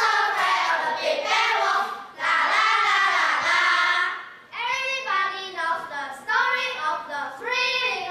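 A group of children singing together. About halfway through the voices drop briefly, then carry on thinner and clearer.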